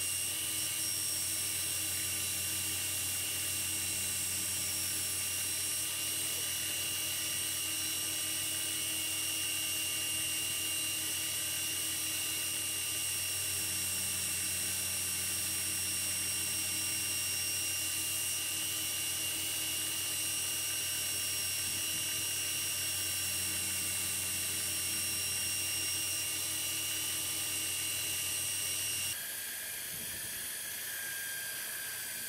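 Belt grinder running with a knife blade pressed against its large contact wheel, hollow-grinding a concave bevel into the steel: a steady high-pitched whine with grinding noise. It cuts off abruptly near the end.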